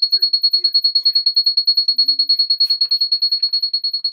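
A high-pitched electronic beeper pulsing rapidly and steadily, about a dozen beeps a second, with faint voices underneath.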